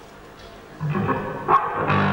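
A low steady hum, then a little under a second in a rock band comes in loud with distorted fuzz guitar and bass. A sharp drum hit lands about a second and a half in.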